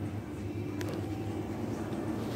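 Steady low hum of a supermarket's background machinery, such as refrigerated cases and ventilation, with a faint click about a second in.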